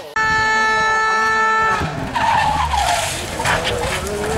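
A horn sounds one loud, steady note for about a second and a half, starting and stopping abruptly. Voices then shout.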